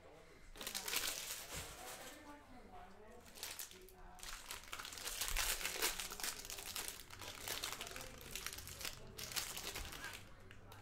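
Foil trading-card pack wrappers crinkling as they are torn open and handled. The crinkling comes in two spells with a short lull about three to four seconds in.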